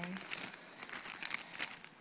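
Clear plastic bags and packaging crinkling as they are handled, a run of irregular crackles.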